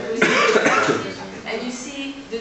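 A person coughing: one loud, rough burst starting a moment in and lasting under a second, with talking around it.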